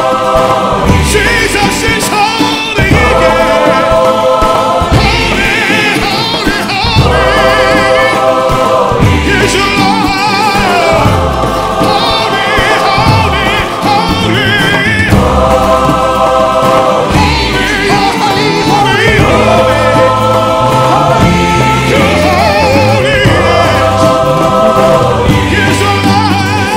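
Live gospel worship music: a choir singing held chords over a band with bass, in phrases of about two seconds, with voices wavering in vibrato above.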